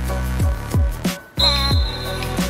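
Background music: a beat-driven track with deep bass hits that slide down in pitch several times, cutting out briefly a little past the middle before coming back in.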